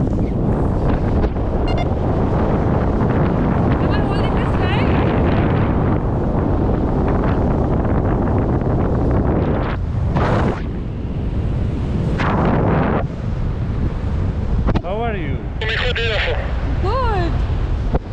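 Loud, steady wind rushing and buffeting over the microphone of a tandem paraglider as it launches off the slope and flies, the sound of the airflow at flying speed.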